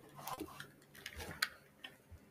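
Faint, irregular clicks and taps of a computer keyboard and mouse, a few scattered strokes with a sharper one about one and a half seconds in.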